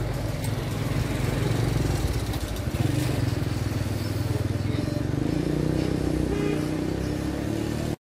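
Steady low rumble of a motor vehicle engine running close by on the street, its pitch creeping slightly higher in the last few seconds.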